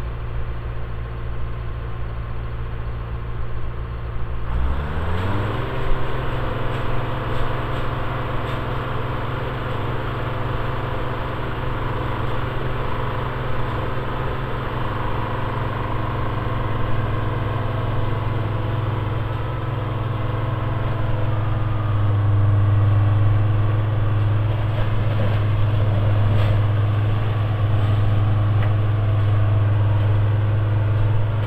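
Diesel engine of a small on-track railroad maintenance-of-way machine idling, then revving up about four and a half seconds in and running steadily at the higher speed as the machine travels along the rails. It gets a little louder in the second half.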